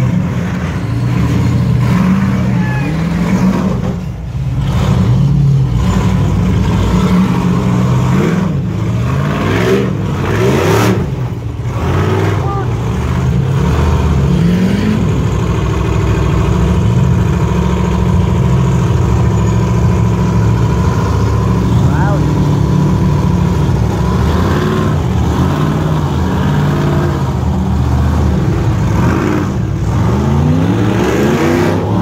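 Ultra4 rock-racing car's engine revving hard in repeated bursts, pitch rising and falling as it is throttled over boulders.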